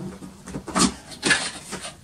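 Cardboard box lid being worked loose and lifted open, making a few short scrapes and rubs of cardboard on cardboard in the second half.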